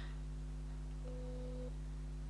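A steady low electrical hum with nothing else over it, and a faint short flat tone lasting about half a second, starting a little after a second in.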